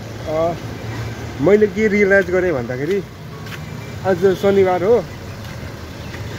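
A man talking to the camera in short phrases, over steady street traffic noise.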